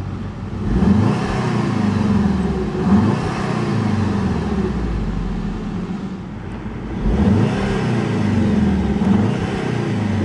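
Turbocharged 16-valve four-cylinder engine of a 2012 Volkswagen Beetle Turbo, heard from inside the cabin, revved in Park twice. Each time it rises, is held with a quick extra blip, and drops back. The revs stop at the electronic limit of about 3,500 rpm.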